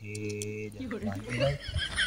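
A man's voice holds a low, drawn-out moan, then breaks into short gliding vocal sounds. About one and a half seconds in, a rapid series of high chirps begins, about four or five a second.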